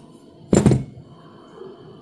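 A single brief thump about half a second in, from handling the dismantled brass plug and key of a dimple lock cylinder.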